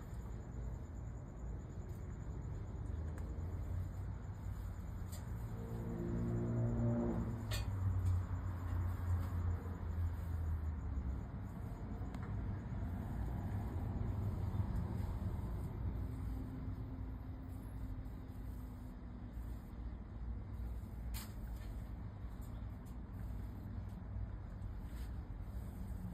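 Steady low background rumble that swells for several seconds about a third of the way in, with a brief humming drone near its peak.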